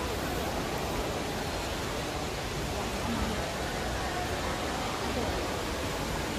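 Steady, even rushing of falling water from a large indoor waterfall, with faint voices now and then.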